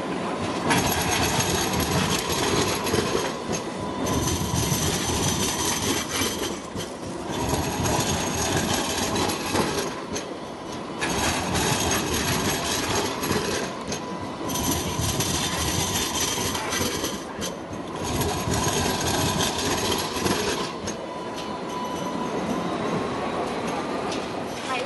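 Alstom Citadis light rail tram passing close by at low speed on street track, its wheels running over the rails in waves of noise with short lulls. A thin, steady, high-pitched squeal from the wheels runs through much of it.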